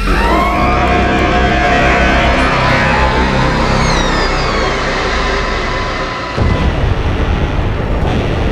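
Loud horror-score sound design: a sudden dense swell of noise and rising tones at the start, with falling high whines in the middle and an abrupt change in texture about six seconds in.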